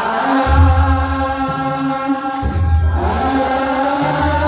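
Ethiopian Orthodox clergy chanting a wereb hymn in unison: many men's voices on long held notes. A deep beat pulses underneath in quick strokes, in two spells.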